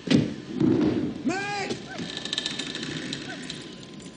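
A sharp knock or thud at the start, then a voice calling out once about a second in. After that comes a stretch of rapid fine crackling and rattling from the wrecked house's debris.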